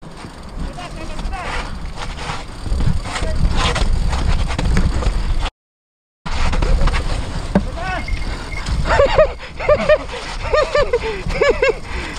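Mountain bike riding down a rough dirt and rock trail: tyre and wind noise with frame and drivetrain rattle, cutting out for under a second just past halfway. In the last few seconds comes a run of short pitched rising-and-falling squeals.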